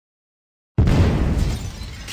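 A glass-shattering sound effect. Out of dead silence, about three-quarters of a second in, comes a sudden loud crash with a heavy low thump. It fades over about a second into scattered tinkles of falling shards.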